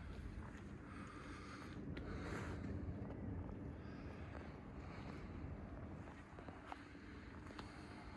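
Faint outdoor background noise: a low rumble with light wind on the microphone, and a few soft ticks near the end.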